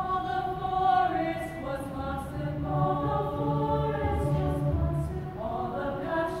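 A girls' choir singing in harmony, holding long chords that change every second or two.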